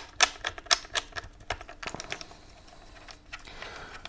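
Small screw of a mounting bracket being turned by hand into the plastic body of a studio flash, giving a run of sharp clicks at about four a second that fade out about halfway through.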